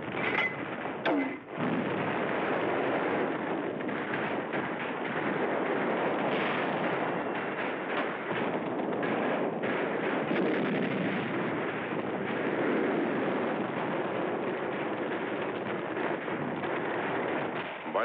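Battle soundtrack of continuous gunfire and explosions, a dense unbroken din with two sharp cracks in the first second or two, dull and thin like an old film's sound track.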